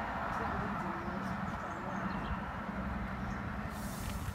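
InterCity 125 High Speed Train heard at a distance: a steady rumble of diesel power car and wheels on rail, easing slightly toward the end.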